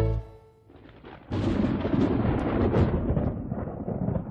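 The music cuts off at the start, and a little over a second in a loud, deep rumble with no clear pitch starts suddenly, then slowly fades.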